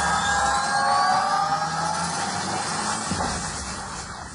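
Synthesized intro sound effect: a riser of several tones gliding slowly upward over a noisy wash, with a hit about three seconds in, then fading out.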